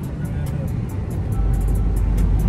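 Car-cabin road rumble while driving, under background music with a ticking beat; a deep, steady bass note comes in about two-thirds of the way through.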